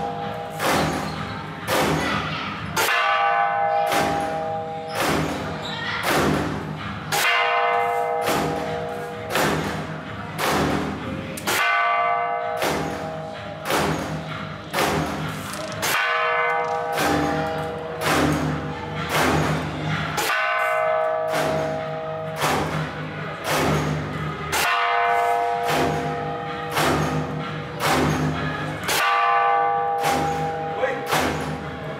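Temple bell and drum struck together in a steady repeating pattern. The bell's ringing tone comes back about every four seconds, with drum beats in between.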